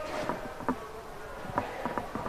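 Quiet handling noises: a puffy coat rustling as it is carried and set down, with a few light knocks and steps, over a faint steady buzzing hum.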